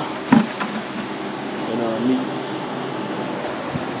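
Garden hose running water steadily into a plastic bucket, with a short knock near the start.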